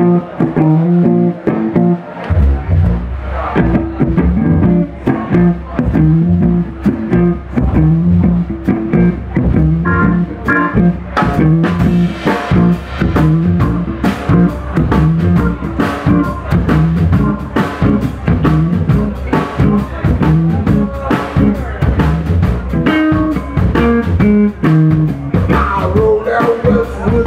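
Live band playing an instrumental blues-rock groove: a semi-hollow electric guitar riffs over a repeating sousaphone bass line and drum kit. The drums come in fully about two seconds in, and the cymbals get busier from about halfway through.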